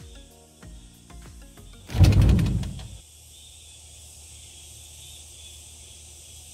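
A wooden-framed sliding window is pushed open in its track with a short scraping rumble about two seconds in. Faint background music plays before it, and a steady soft hiss of outdoor sound follows.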